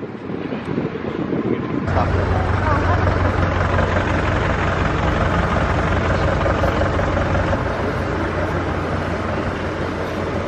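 Outdoor shopping-street ambience: a steady low traffic hum with indistinct voices of passers-by, stepping up abruptly about two seconds in.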